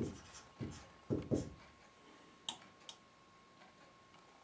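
Dry-erase marker writing on a whiteboard: a few short, faint strokes in the first second and a half, then two light ticks in the middle.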